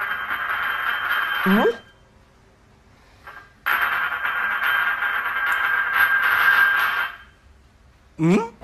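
Ceramic bowl scraping across a glazed tile floor as a kitten paws and pushes it, in two stretches of a few seconds with a ringing tone from the bowl and a pause between. A short rising squeak comes near the end of the first stretch.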